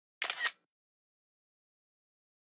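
iPad screenshot shutter sound: one short camera-shutter click in two quick parts, a quarter second in, with silence around it.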